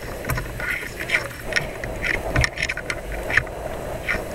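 Outdoor pedestrian-plaza ambience recorded on a handheld camera while walking: irregular knocks and footsteps with handling noise on the microphone, over a steady murmur of passers-by.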